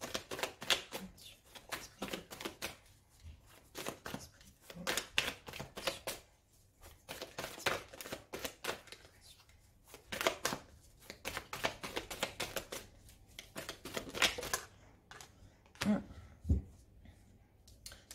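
A deck of tarot cards being shuffled by hand: quick runs of soft clicks in uneven bursts that stop a few seconds before the end. A couple of low knocks follow as a card is laid down on the cloth.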